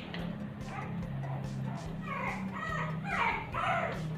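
Shih Tzu puppy yipping and whining: several short yelps that fall in pitch, mostly in the second half, over a steady low hum.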